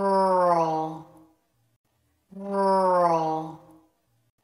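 A woman's voice saying the word 'rural' in slow motion, slowed down and drawn out to about a second and a half, twice, with silence in between.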